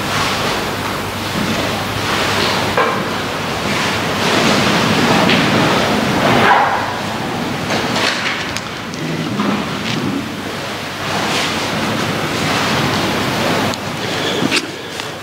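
Loud, uneven rustling and rubbing noise that swells and fades, with a few soft knocks, like a clip-on microphone brushing against vestments as its wearer walks.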